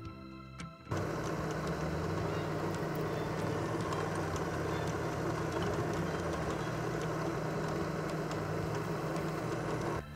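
A vertical milling machine's spindle drilling a 5 mm tap-drill hole in a machined metal part. The sound starts abruptly about a second in and then runs steadily, a constant motor hum under the noise of the cut.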